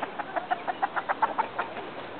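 A quick run of about a dozen short, clipped animal sounds, some seven a second, lasting about a second and a half.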